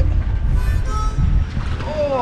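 Wind buffeting an outdoor camera microphone in a loud, uneven low rumble, with a few faint high steady tones over it.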